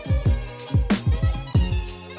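Background music with a steady beat: deep booming kick drums and sharp hits about every two-thirds of a second over held bass and chord notes.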